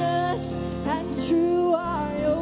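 Live worship song: a woman sings the lead in held, gliding notes over a band with guitars.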